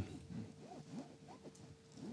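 A pause in speech: quiet room tone with a faint steady hum and a few faint, indistinct sounds.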